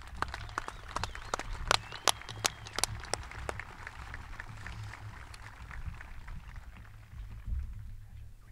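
Crowd applause, with a few loud sharp claps close by in the first three seconds; it thins out over the last few seconds.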